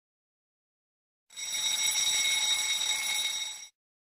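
A countdown timer's alarm sound effect ringing for about two and a half seconds, signalling that the time to answer has run out. It starts about a second in and cuts off suddenly near the end.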